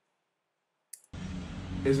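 Near silence for about a second, then a single short click, followed by a steady hiss and a man's voice starting just before the end.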